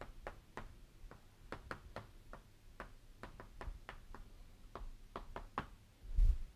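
Chalk on a blackboard as a formula is written: a faint, irregular run of short light taps, about three to four a second.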